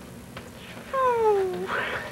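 A drawn-out meow that falls steadily in pitch, followed by a shorter, higher meow-like call near the end.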